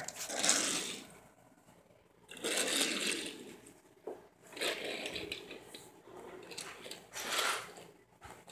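Soft, intermittent scraping and rustling of small die-cast toy cars being set down and slid into a row on a wooden floor, in several short bursts with brief quiet gaps.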